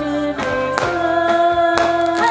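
Amplified song with women's voices holding long sustained notes over a backing track, with a few sharp percussion hits.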